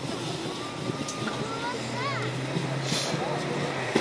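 Heavy military diesel engines idling with a steady low hum, heard outdoors under a noisy background.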